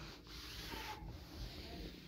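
Fabric rustling as a bedspread is smoothed over a bed, in two long strokes.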